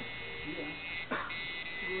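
Coil tattoo machine buzzing steadily as the needle works into skin, with a short break in the buzz and a brief noisy sound a little past a second in.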